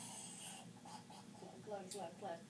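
A soft rustling scrape, then a person's voice murmuring quietly in the second half, with a small click near the end.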